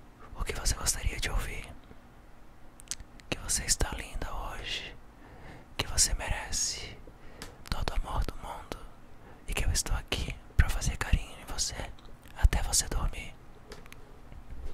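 A man whispering in short breathy phrases, ASMR-style, with sharp clicks between them.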